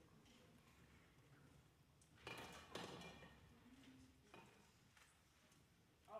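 Near silence: the hall's room tone, with a couple of faint brief sounds about two and three seconds in and a faint tick a little after four seconds.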